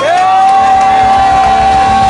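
A loud, long whoop from one voice, swooping up at the start and held on one high pitch for about two seconds, over an audience cheering and clapping as a live song finishes.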